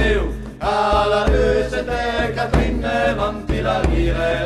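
Traditional Piedmontese-French folk band playing, with voices chanting together over a steady low drone and a heavy bass pulse.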